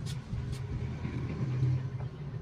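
Low, steady engine hum, with two small clicks in the first half-second.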